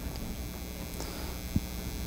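Steady electrical mains hum, with one faint click about one and a half seconds in.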